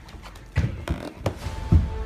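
Hurried footsteps thumping across a floor, five or so quick uneven steps, with a few faint held tones coming in about halfway.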